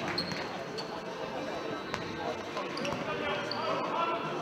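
Futsal ball being kicked and bouncing on a hard sports-hall floor, with a sharp kick about two seconds in, sneakers briefly squeaking on the court, and players and spectators shouting and talking in the echoing hall.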